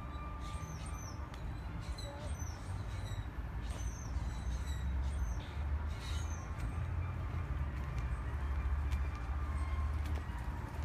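Low, uneven rumble of wind buffeting a phone microphone outdoors, growing slightly stronger in the second half, with faint short high chirps now and then.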